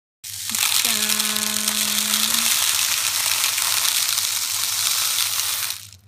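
Small plastic BB pellets poured in a continuous stream from a plastic cup into a plastic tub, a dense rushing rattle that stops shortly before the end. A steady held tone sounds under it for about a second and a half near the start.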